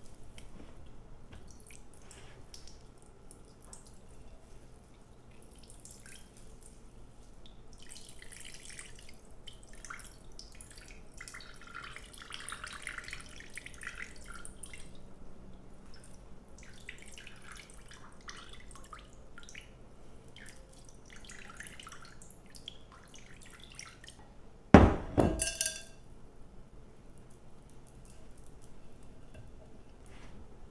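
Whey dripping and trickling from a cloth bag of homemade yogurt squeezed by hand over a glass bowl, in faint irregular drips with a longer trickle partway through. One loud knock near the end.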